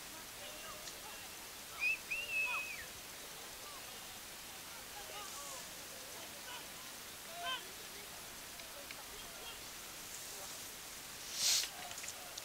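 Faint, distant shouts of football players on the pitch, scattered over a steady background hiss, with a brief burst of noise near the end.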